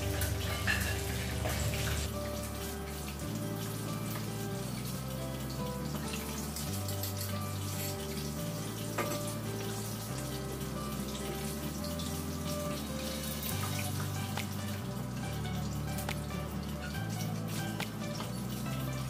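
Background music with a low bass line stepping between notes, over a steady sizzle and crackle of chicken frying in oil.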